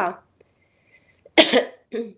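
A single short cough, sudden and loud, about one and a half seconds in, in a pause in a woman's speech.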